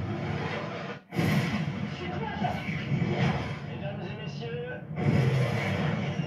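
Film trailer soundtrack: the roar of fighter jets in flight mixed with music, dropping out briefly about a second in, with a man's voice starting near the end.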